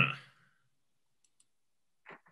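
The end of a spoken word fades out, followed by near silence with two faint, quick clicks about a second in.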